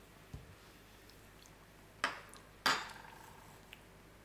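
A metal spoon clinking twice against a hard surface about two seconds in, the second clink ringing briefly. A soft low thump comes shortly after the start.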